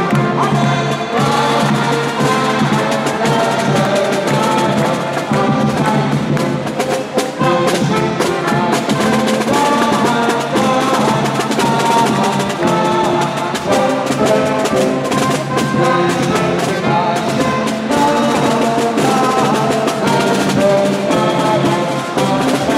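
Street brass band playing a tune: trumpets and a sousaphone over a steady drum beat.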